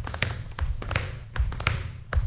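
AI-generated foley of a dancer's feet on a stage floor: an irregular run of taps and soft thumps, several a second, over a low rumble. The sounds only roughly follow the dancer's steps, since the model struggles to match ambient sounds precisely to the on-screen action.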